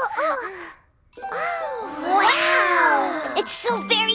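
High-pitched cartoon chick voices exclaiming in wonder over soundtrack music, with a bright shimmering chime near the end.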